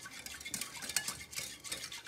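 Wire whisk beating a cream mixture in a glass bowl: a quick, irregular run of light clicks as the wires strike the glass, with the swish of the liquid.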